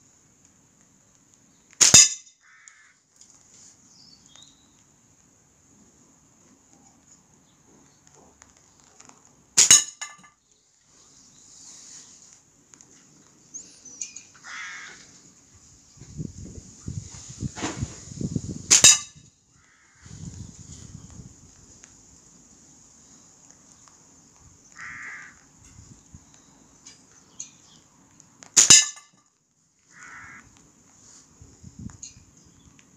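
A slingshot shot four times: each release gives one sharp crack of the rubber bands and leather pouch, about eight to ten seconds apart.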